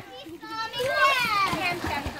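Children's voices at play: high-pitched calls that rise and fall for about a second and a half, starting about half a second in.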